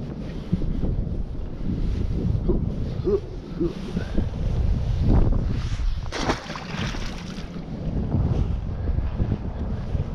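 Wind buffeting a body-worn action-camera microphone: a steady low rumble, with a louder rush of noise for about a second starting some six seconds in.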